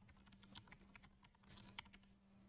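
Faint computer keyboard typing: a quick run of short key clicks, with one louder keystroke near the end.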